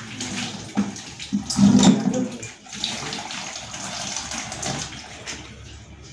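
Water from a garden hose pouring into a plastic bucket as it fills, briefly louder just before two seconds in.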